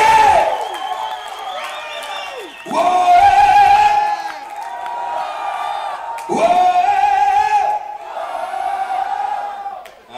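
Unaccompanied call-and-response in a heavy-metal club show: the lead singer holds two loud, long sung notes through the PA a few seconds apart, and the audience sings and shouts back in between.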